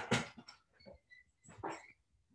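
Dog whining: a few faint, thin, high whimpers, then a louder whine near the end.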